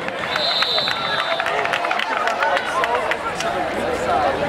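A referee's whistle blown once, a steady high tone lasting about a second shortly after the start, over crowd voices and scattered sharp knocks.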